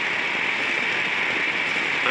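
Steady rushing noise of a gas-powered racing kart at speed, heard from its onboard camera: wind on the microphone over the running engine and tyres.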